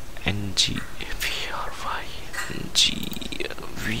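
A man's voice speaking softly, near a whisper, with a few faint computer keyboard clicks in the second half.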